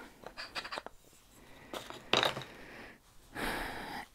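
Quiet rustling and handling noises as a stitching project is picked up and moved, with a longer hissing rustle near the end.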